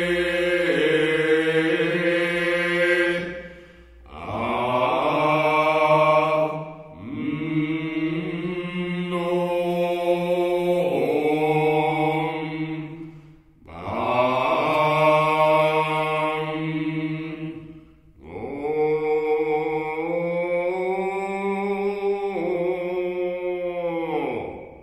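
Chant-like vocal music: a voice holding long drawn-out notes in phrases a few seconds long, with brief breaks between them.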